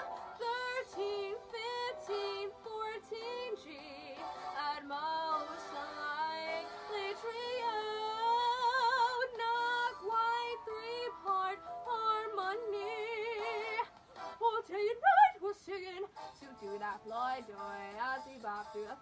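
A young woman singing wordless scat-style runs: many short notes jumping quickly up and down, some held briefly with vibrato. Near the end the line drops to lower notes.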